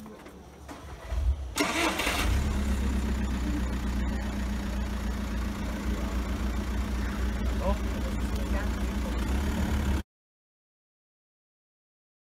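A car engine starts about one and a half seconds in, then idles steadily.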